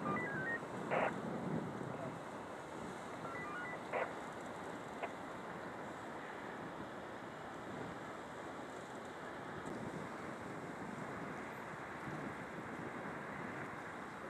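Shoreline ambience: wind on the microphone and small waves washing against the rocks, with a couple of short, sharper sounds about one and four seconds in.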